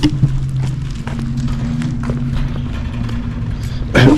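A motor running with a steady low hum. A second, higher tone joins about a second in and holds.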